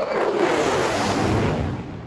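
Low-flying F-35 Lightning II fighter jet passing overhead: loud jet noise that sweeps down in pitch as it goes by and eases off near the end.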